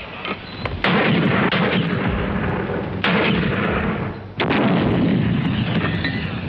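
Three heavy artillery blasts, about one, three and four and a half seconds in, each dying away over a second or two.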